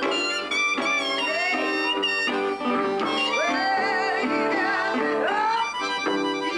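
Live acoustic blues: harmonica playing with notes that bend upward and waver, over a strummed acoustic guitar, with a woman's voice singing along.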